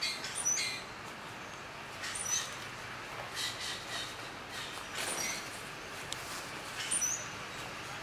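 Short, high bird chirps that drop slightly in pitch, repeating every second or few, over soft crunching footsteps on dry leaf litter.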